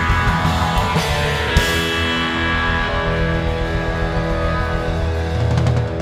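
Live rock band playing loudly, with electric guitar and a harmonica played into a vocal microphone over a steady low end.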